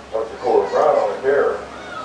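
A man's voice over a stadium public-address system, calling out in a few long, drawn-out syllables.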